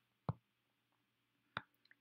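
Two short clicks of a computer mouse, about a second and a half apart, with quiet in between.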